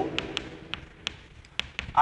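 Chalk tapping on a chalkboard as letters are written: a run of sharp, light taps, about seven in two seconds.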